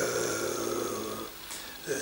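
A man's voice in a hesitation at a close microphone: a breathy, throaty sound fades into a short pause, then speech starts again near the end.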